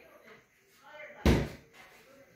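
Overhead lift-up cabinet flap door being pulled shut, closing with a single loud bang about a second and a quarter in.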